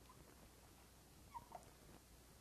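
Near silence with two faint, very short squeaks about a second and a half in: a marker squeaking as it writes on a whiteboard.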